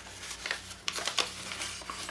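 A sheet of letter-size paper rustling and crinkling softly under the fingers as a triangle flap is creased and reverse-folded, in a few short, faint crinkles.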